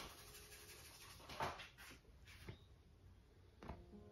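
Near silence: quiet room tone with a few faint, soft swishes, the clearest about a second and a half in.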